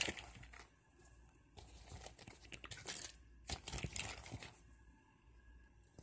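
Small plastic doll accessories being handled and stuffed by hand into a small fabric purse: irregular rustling with light plastic clicks, in two spells with pauses between.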